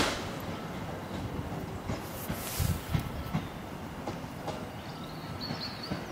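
Rumble of a train running away along the track after passing through at speed, with scattered clicks of wheels over rail joints and a brief swell of hissing noise about two seconds in.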